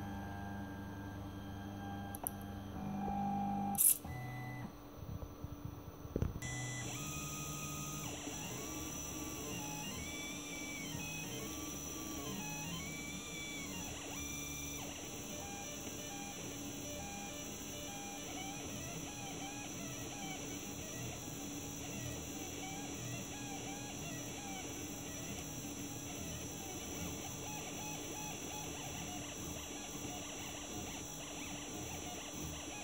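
A home-built 3D printer at work: its stepper motors whine in tones that rise and fall in pitch as the print head moves, over a steady hum. There is a sharp click about four seconds in and a thump about six seconds in, after which a steady high hiss joins the motor tones.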